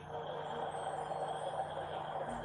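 Steady background hiss with a faint low hum and a faint held tone underneath, with no distinct events.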